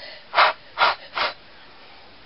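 Three short puffs of breath blown across a wax-coated card to blow loose bits off it.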